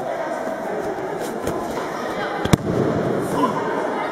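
A single sharp, loud thud-slap of a body hitting the gym mat about two and a half seconds in, over a steady murmur of onlookers' chatter.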